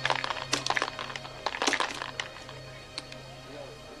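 Dice rattling inside a sic bo shaker as it is shaken: a quick run of clicks for about two seconds, then a few scattered clicks, over background music.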